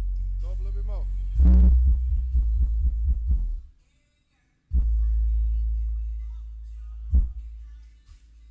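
Music with deep, heavy bass playing through a pair of Pioneer 12-inch subwoofers in a car trunk, with a voice in the track near the start. The music drops out for about a second midway, then the bass comes back.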